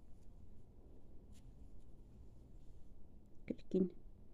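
Faint rustle and a few light clicks of a crochet hook working yarn, then a voice saying a word or two near the end.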